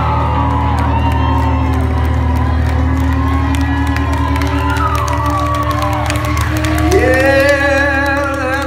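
A live rock band holds a steady low chord on amplified guitars and bass while the audience cheers and whoops. About seven seconds in, a new high note rises in over the band.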